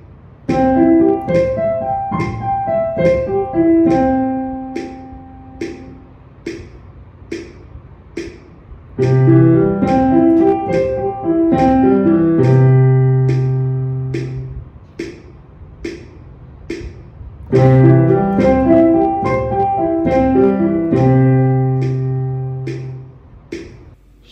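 Piano playing C major arpeggios over two octaves, up and back down, three notes to each tick of a metronome set to 72 beats a minute. The arpeggio is played three times, the first in the upper range ending on a held note, the other two an octave lower ending on a long low C; the metronome ticks on steadily through the pauses between.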